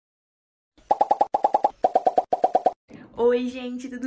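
An edited-in popping sound effect: four quick runs of about four short pitched pops each, starting about a second in. About three seconds in, a young woman's voice comes in with a drawn-out call.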